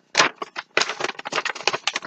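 A sheet of paper crackling and rustling as it is handled in the hands: a short rustle near the start, then a longer run of crackling from just under a second in.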